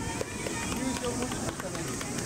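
Indistinct voices of people in the stands and around the track, over steady open-air ambience; no words stand out.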